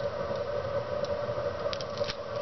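Hands sliding and pressing thin solar cells into line on a plywood board: soft scraping and rubbing, with a few light clicks near the end, over a steady low hum.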